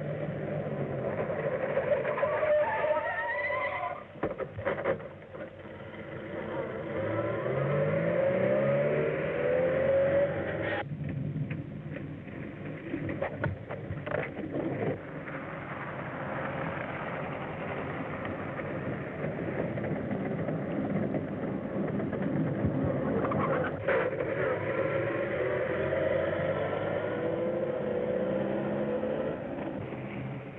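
Vintage automobile engines running at speed, their pitch rising and falling repeatedly as the cars accelerate and ease off, with a few sharp clicks. The sound is muffled, with no high end.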